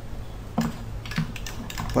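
A few short clicks from an arcade joystick's microswitches as the stick is worked, over a steady low electrical hum. A man's voice starts right at the end.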